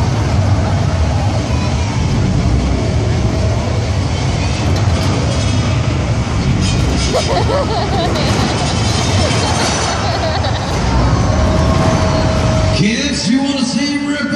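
Heavy engine rumble from the car-eating robot dinosaur Megasaurus working on a car, with a voice over the arena PA. The rumble drops away about thirteen seconds in.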